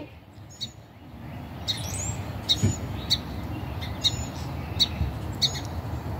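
Small birds chirping repeatedly, short high chirps about twice a second from about a second and a half in, over low background noise.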